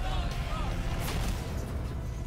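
Background music with faint voices underneath; no loud crash stands out.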